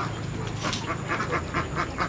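A group of domestic Alabio ducks and Tasik-Alabio crosses quacking in a quick, continuous run of short calls, about six a second. A brief sharp click sounds about a third of the way in.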